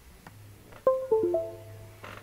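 A short Windows chime of four quick ringing notes, falling then rising, starts suddenly about a second in over a faint low hum. It is the computer signalling that the USB modem has been plugged in.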